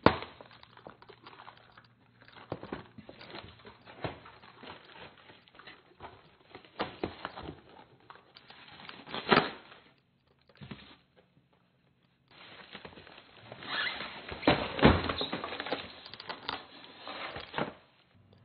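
Cardboard box being unpacked: flaps opened and folded back, foam packing blocks and sheets lifted out, with irregular rustles, scrapes and knocks. The handling gets busier and louder in the last few seconds.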